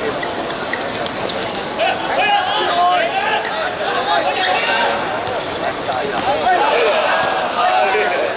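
Several voices of players and onlookers at a football match, calling out and talking over one another, with a few short thuds of the ball being kicked.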